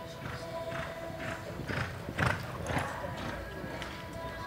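A horse loping on arena dirt, its hoofbeats coming in a steady rhythm of about two strides a second, the loudest a little past halfway.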